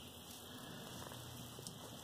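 Quiet room tone with faint rustling handling noise and a small tick about a second and a half in.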